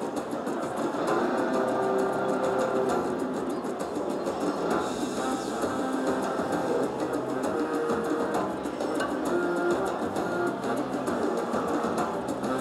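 Raging Rhino Rampage slot machine playing its free-games bonus music steadily while the reels spin.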